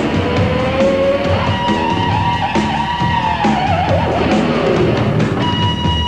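Live heavy metal band playing: an electric guitar holds long sustained notes that slide and bend, one dropping away about halfway through, over steady rock drums.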